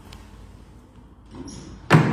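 A door slams shut once near the end, a single sharp bang with a ringing echo from the tiled hall, after low room noise and a brief rustle.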